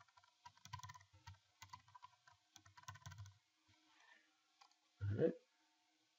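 Computer keyboard typing: a quick run of keystrokes for about three seconds, then a pause.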